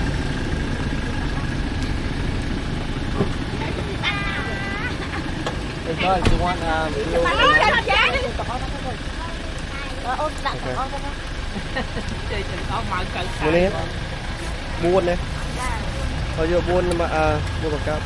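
Voices talking in short bursts, with a louder stretch about eight seconds in, over a steady low rumble of an idling engine.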